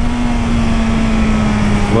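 Motorcycle engine droning on one steady note that sinks slightly as the bike slows down, under heavy wind noise on the microphone.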